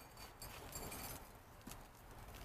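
Faint rustling of soil and a few soft knocks as a plant is eased out of its plastic nursery pot.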